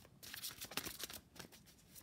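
A deck of oracle cards being shuffled by hand: a faint, irregular run of quick card-on-card flicks and rustles.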